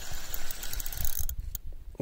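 Spinning reel being cranked by hand, its gears whirring and clicking as line is wound in after a bite, easing off briefly near the end.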